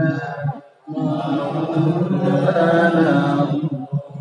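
A man chanting in the drawn-out melodic intonation of a Bengali waz preacher: a short phrase, a brief pause under a second in, then one long held, wavering phrase.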